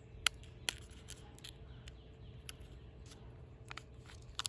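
Fingers handling a small plastic jam portion tub and picking at its foil lid: scattered faint clicks and crinkles, the sharpest about a quarter of a second in.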